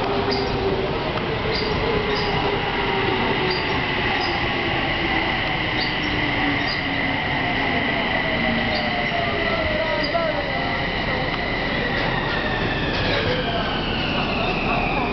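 Odakyu electric commuter train pulling in and braking to a stop. A steady high squeal runs under a whine that falls in pitch as the train slows, with scattered light clicks. The falling whine dies away about ten seconds in, and the squeal fades near the end.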